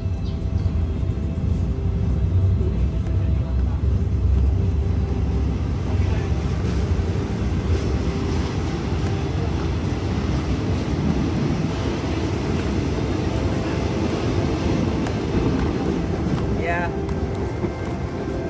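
Passenger train pulling out of the station and running: a loud, steady low rumble of the moving carriage, heard from an open doorway.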